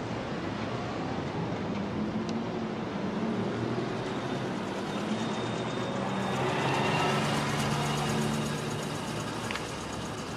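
Steady city street ambience with traffic noise and a low hum, swelling a little midway.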